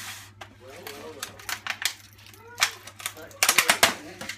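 Sharp clicks and crinkles of plastic packaging being handled as eggs are got out of a plastic egg carton and bag, ending in a quick run of loud clicks, with quiet murmured voices between.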